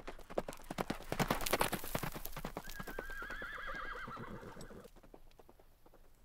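A horse's hooves clip-clop at a quickening pace, then about three seconds in a horse whinnies in one wavering call lasting just over a second. The sound fades out toward the end.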